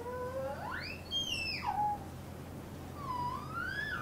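A sliding pitched tone sweeps high and falls back over about a second and a half, then a second, shorter tone rises near the end.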